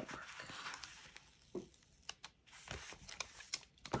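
A paper planner sticker being peeled off its backing sheet and pressed onto a planner page: faint paper rustling, then a few light taps.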